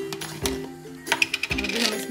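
A quick run of light, bright clinks about a second in, a small glass bowl knocking as it is handled over a frying pan, over background music.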